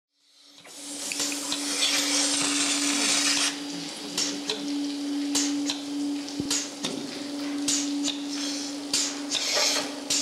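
Milking machine running with a steady hum under a loud hiss of air sucked in through the open teat cups for the first few seconds. As the cups are fitted onto the cow's teats, shorter hisses and clicks follow.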